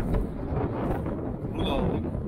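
Wind buffeting the microphone outdoors: a steady low rumble.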